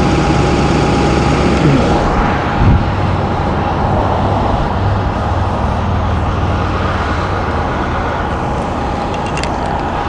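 A vehicle engine running steadily close by: a low, even rumble with a thin steady whine over it.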